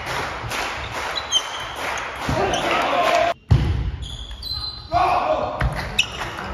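Table tennis rally: the plastic ball clicking off the bats and the table in quick alternation, with a short break about halfway through before the clicks start again. A murmur of voices from the hall runs underneath.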